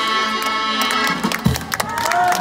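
Ukrainian folk instrument band of violin, tsymbaly (hammered dulcimer), accordion and drum kit ending a tune. The final held chord stops about a second in and is followed by a low drum hit. Scattered clapping begins near the end.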